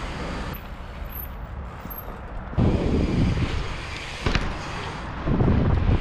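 Bicycle tyres rolling over concrete with wind buffeting the camera microphone, swelling louder twice, about two and a half and five seconds in. A single sharp knock sounds just after four seconds.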